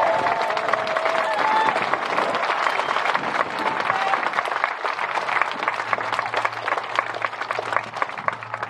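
Crowd applauding: dense clapping that thins out toward the end.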